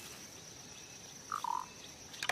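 Forest ambience with a steady high-pitched hum, and about one and a half seconds in a short animal call of two notes, the second lower than the first.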